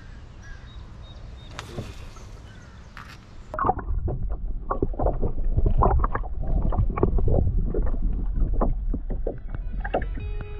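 Water sloshing and gurgling, heard muffled through a camera held underwater, with many small irregular knocks and crackles over a low rumble, starting about three and a half seconds in. Before that there are quieter open-air sounds of a small boat on a lake, with a few light knocks.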